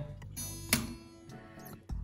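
Steel strings of an acoustic guitar sounding as the broken D string is unwound from its tuning peg: a sharp click, then a string ringing on and fading.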